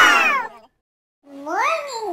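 A baby's loud, high-pitched squeal falling in pitch, then after a short pause, sing-song babbling that slides up and down in pitch.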